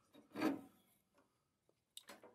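A short scrape about half a second in as a square server cooling fan is gripped and lifted, followed by a couple of faint ticks and a small click at the end as it is handled.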